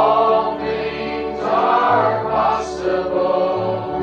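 A congregation singing a slow hymn together, with held bass notes from an instrumental accompaniment under the voices.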